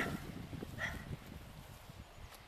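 Faint, steady rushing of the nearby Chewuch River. A short sharp sound comes at the very start and a brief faint sound a little before one second.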